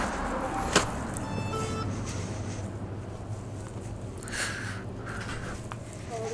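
Background ambience of a petrol station with a steady low hum. There is a single sharp click just under a second in, followed by a short run of faint tones.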